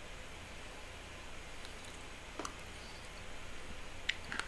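Quiet eating sounds: a metal spoon scooping yogurt from a small plastic cup, with one soft click about two and a half seconds in, over a low steady hum.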